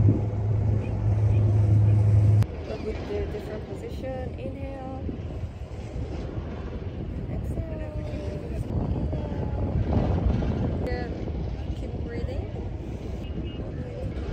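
Background music stops abruptly about two seconds in. After that there is a steady low rumble of wind on the microphone with faint, distant voices.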